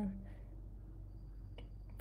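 A pause in speech filled by steady low electrical hum, with a faint click and a brief thin high beep near the end.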